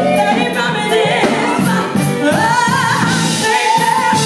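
Female gospel vocal group singing live into microphones, with a lead voice sliding through wavering runs over the others in the second half.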